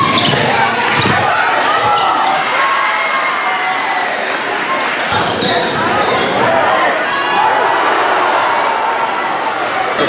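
Basketball dribbled on a hardwood gym floor, with a steady din of crowd and player voices echoing around the gym.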